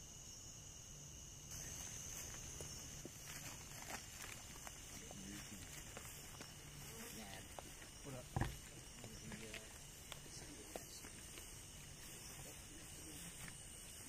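Faint night chorus of crickets, a steady high-pitched trill, with scattered small rustles of steps in grass and faint far-off voices. A single thump stands out about eight seconds in.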